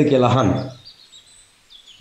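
A man's voice speaking, stopping less than a second in, then a pause in which faint, high bird chirps are heard before the voice resumes.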